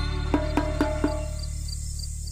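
Intro music for an animated logo: four struck notes in the first second, then the music fades away under a high, insect-like chirp that repeats about four times a second.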